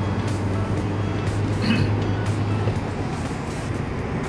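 Cabin noise inside a moving Mitsubishi Xpander: a steady low drone from its 1.5-litre engine over road and tyre noise.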